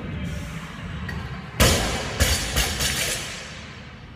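Loaded barbell with bumper plates dropped from overhead onto rubber gym flooring: one heavy thud about one and a half seconds in, then a few smaller bounces as it settles. Background music plays underneath.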